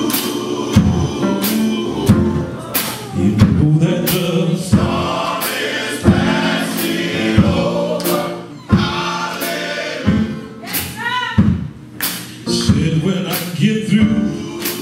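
Men's gospel choir singing in harmony over a steady beat.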